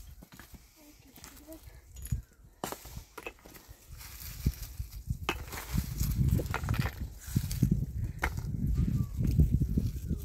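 Scraping, scuffing and knocking of stones and dry gravelly soil, sparse at first and then louder and denser in the second half. A brief soft voice sounds near the start.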